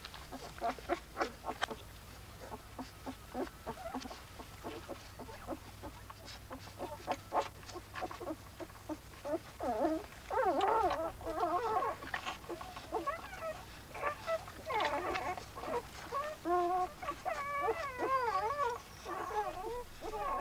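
Newborn Iberian wolf pups whimpering and squeaking: high, wavering cries that come thicker and louder in the second half. In the first half they sound over short wet clicks from the mother wolf licking them.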